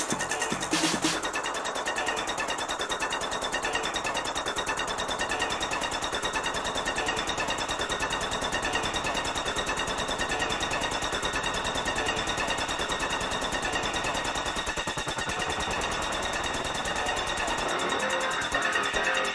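Electro DJ set: the kick drum and bass drop out about a second in, leaving a fast, buzzing synth pattern, and the low end comes back at the very end.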